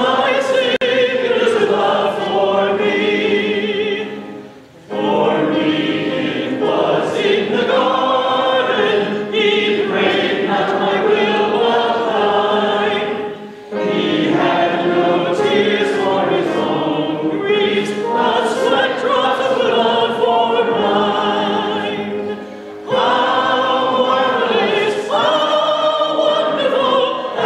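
Church congregation singing a hymn together, with brief breaks between sung phrases about every nine seconds.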